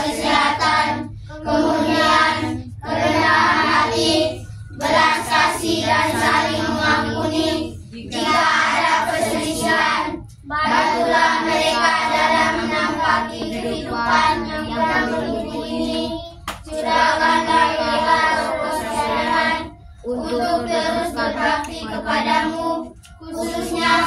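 A group of children singing a song together in unison, in long phrases broken by short breath pauses.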